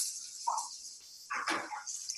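Soy-and-calamansi-marinated tofu sizzling in a hot frying pan as it crisps, a steady high sizzle that weakens after about a second.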